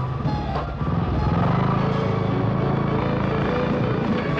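A motor vehicle's engine running with a low, even rumble that swells about a second in, over newsreel background music.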